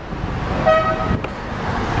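A car horn gives one short toot, steady in pitch, a little under a second in, over steady city traffic noise.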